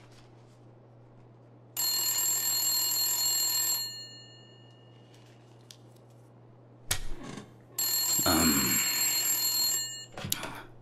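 Desk telephone ringing twice, each ring lasting about two seconds, with a pause between. There is a sharp knock just before the second ring.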